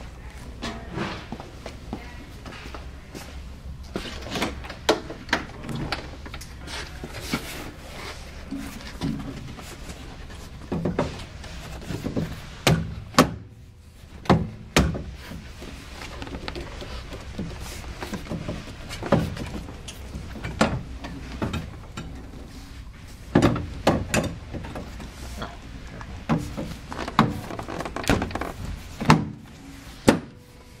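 Irregular knocks and thuds of a recovered seat cushion being handled and pressed down onto a Land Rover Defender 90's seat base, over a steady low hum.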